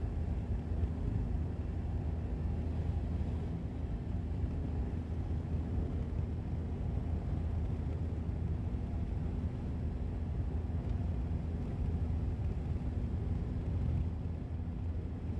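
A car driving steadily on an open road: a continuous low rumble of engine and tyres on the asphalt.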